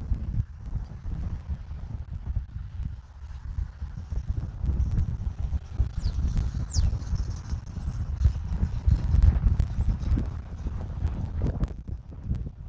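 Wind buffeting an outdoor camera microphone, a low rumble that rises and falls in irregular gusts. Two faint high chirps come through about six to seven seconds in.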